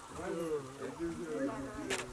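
A singing voice carrying a wavering, nasal melody line.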